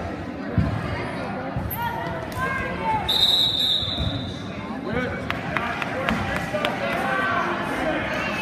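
A referee's whistle blown once, about three seconds in, in one steady shrill note lasting just over a second, stopping the action as the wrestlers go out of bounds. Around it, shoes and bodies thump and squeak on the wrestling mat, and spectators and coaches shout in the gym.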